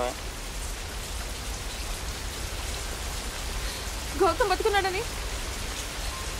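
Heavy rain falling on a stone walkway, a steady hiss of drops. A person's voice is heard briefly about four seconds in.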